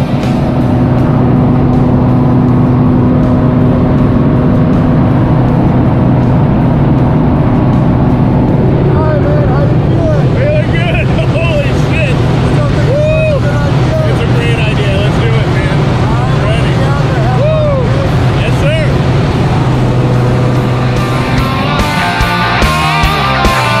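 Small single-engine propeller plane heard from inside the cabin during the climb: a loud, steady engine and propeller drone. From about nine seconds in, voices shout over the engine noise.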